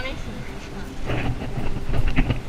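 Wind buffeting the camera microphone in an uneven low rumble, with a short spoken word at the start.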